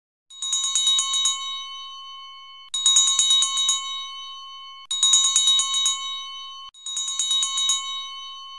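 A high-pitched bell struck in four quick flurries of about eight rapid strokes each, roughly two seconds apart, each flurry left ringing and slowly fading.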